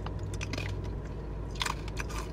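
Biting into and chewing a ripe, spicy plantain chip: a few light crunches. The chip is crisp but gives under the teeth rather than shattering.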